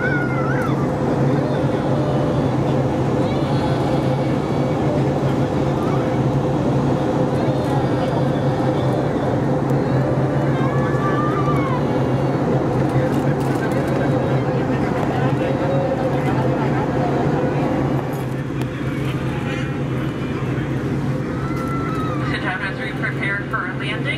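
Steady in-flight cabin noise of an Airbus A320neo: a constant low drone with a steady hum above it, dropping slightly about eighteen seconds in. Indistinct passenger voices run underneath.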